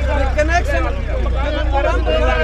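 Several men's voices talking over one another in a heated argument, over a steady low rumble.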